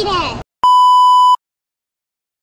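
A single loud, steady, high-pitched electronic beep, like a censor bleep, lasting under a second, just after a brief voice cuts off.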